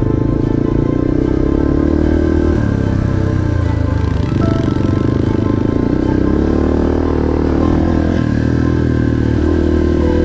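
A Yamaha TT-R230 dirt bike's single-cylinder four-stroke engine revving up and down as it is ridden, its pitch rising and falling a few times, with music playing over it.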